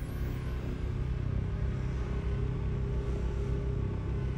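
Anime power-up sound effect: a steady low rumbling drone under a hiss, for a chakra aura charging up.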